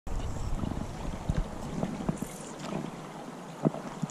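Shallow creek water running over riffles, with wind rumbling on the microphone through the first couple of seconds and a few short knocks.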